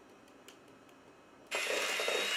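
An electric hand mixer switches on abruptly about a second and a half in and runs with a steady whine, beating flour into pastry dough in a steel bowl. Before it starts there is near quiet.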